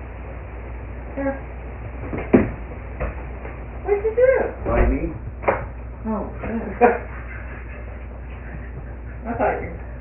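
Indistinct voice sounds and several sharp clicks and knocks of a door being handled, picked up by a home security camera's thin-sounding microphone.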